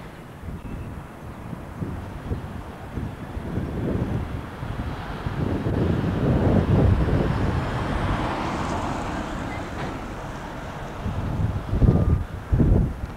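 Street ambience: a passing vehicle swells from about four seconds in to a peak in the middle and then fades away, with wind buffeting the camcorder microphone throughout.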